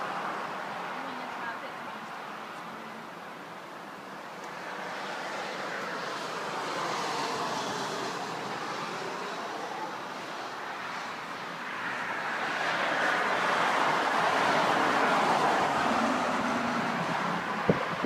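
Road traffic passing: the tyre and engine noise of cars swells and fades, loudest from about 12 to 16 seconds in, with wind on the microphone. A few sharp clicks near the end.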